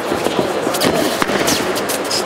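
Several sharp smacks of boxing gloves landing in quick succession during an exchange of punches, over a steady background din of the hall.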